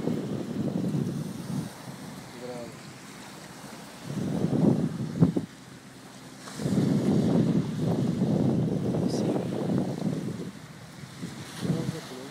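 Wind buffeting the phone's microphone in gusts, with quieter lulls between them and a single sharp click about five seconds in.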